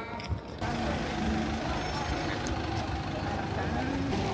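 Busy city street ambience: a steady wash of noise like traffic passing on a wet street, with voices in the background. It starts abruptly about half a second in, at an edit.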